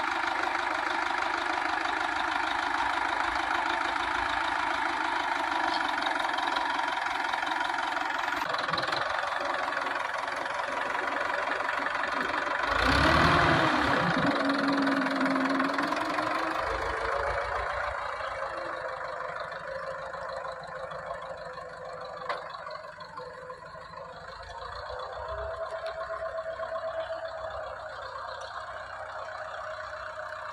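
Farm tractor's diesel engine running under load as it pulls a cultivator through ploughed soil, with a brief surge in pitch and loudness about thirteen seconds in. It grows fainter in the second half as the tractor moves away.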